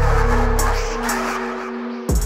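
Instrumental beat with no vocals: held synth tones and hi-hat ticks, with the deep bass dropping out about a second in.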